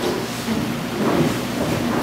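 A congregation taking their seats: a steady rustle of chairs and bodies moving, with faint voices mixed in.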